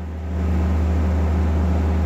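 Steady low wind rumble on the microphone outdoors, with a faint, even wash of noise from a large crowd.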